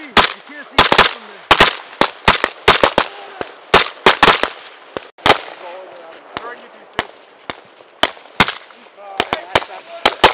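Several rifles firing irregularly, about two shots a second in single cracks and quick pairs from different shooters, some sharp and close, others fainter.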